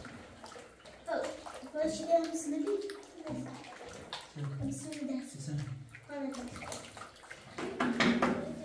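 A hand stirring wet plaster mix around a basin, a soft watery sound under quiet talking.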